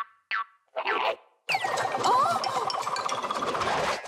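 Cartoon sound effects: three short springy boings in the first second, then from about a second and a half a busy run of effects with a whistle that glides down and wavers, over light music, as the toy bunny goes down the slide.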